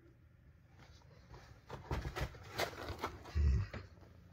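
Close rustling and soft knocks from a phone being shifted against the window, ending in a dull thump about three and a half seconds in.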